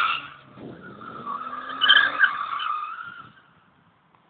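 Car tyres squealing as a BMW 320i slides in a drift, a wavering high squeal that fades out about three seconds in, with the engine note rising faintly underneath.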